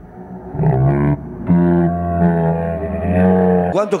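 A man's voice calling out in long, drawn-out held tones rather than normal speech.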